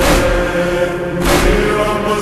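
Slowed and reverbed Urdu noha: held, chant-like vocal notes over a heavy beat that strikes about every second and a quarter.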